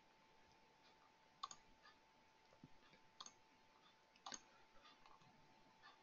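Near silence with three faint computer-mouse clicks, spaced about a second apart from a second and a half in, over a faint steady electronic tone.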